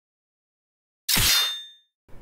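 A single sharp metallic clang out of silence about a second in, its bright ringing dying away within about half a second.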